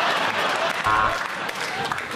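Studio audience laughing and applauding after a joke, dying down over the second half.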